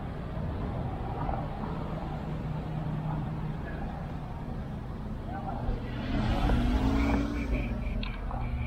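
Street traffic at an intersection: a vehicle engine runs steadily and then grows louder about six seconds in, its pitch rising as it pulls away. A run of quick, high-pitched beeps follows near the end.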